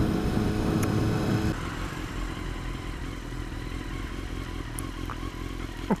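A Honda CBR954RR's inline-four engine running steadily under way. About a second and a half in its note drops and quietens as the bike slows toward a roundabout.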